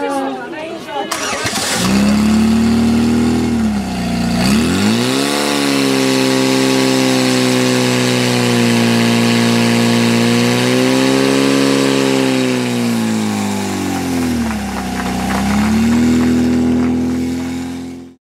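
Portable fire pump engine starting up about two seconds in and revving to a high, steady speed while it pumps water through the attack hoses. Its pitch dips briefly twice, about four seconds in and again near the end.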